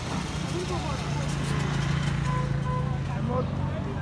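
A steady low engine hum, strongest through the middle, with voices talking in the background.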